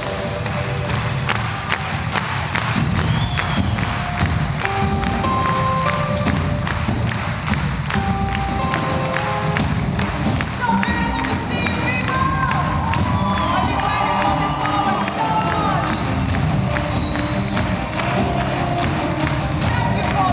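A live metal band plays with keyboards over drums and bass, and the audience cheers and shouts over the music, recorded from within the crowd.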